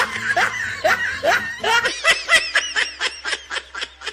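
Rapid laughter, a quick run of short repeated 'ha' sounds that becomes more regular and trails off over the last two seconds.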